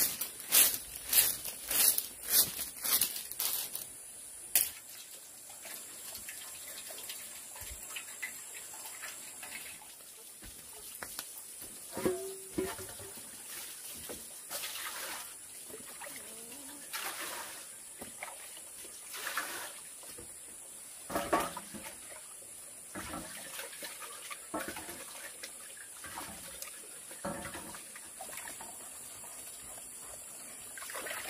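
A bundle of thin bamboo strips clattering in quick strikes for the first few seconds. Then water is scooped from a bucket with a bamboo dipper and poured, splashing and trickling into a metal basin and onto a bamboo slat floor in scattered bursts.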